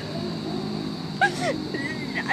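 A woman's short vocal sound, falling in pitch, about a second into a pause in her tearful speech, over a steady low background hum.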